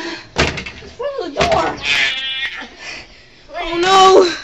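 Young people's voices crying out, with knocks and a door thump among them.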